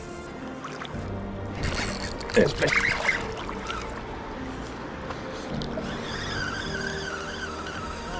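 Background music with steady held tones, and a man laughing briefly about two and a half seconds in.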